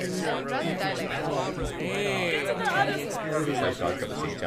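Several people's voices talking over one another at once: overlapping chatter of mixed voices, with no single speaker standing out.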